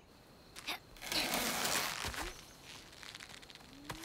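Foley rustling of leaves and brush: a short tick, then about a second of loud rustling, then fainter crackling rustle.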